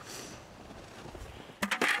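A quick clatter of a few sharp knocks near the end as a plastic compost bucket is handled, after a stretch of faint hiss.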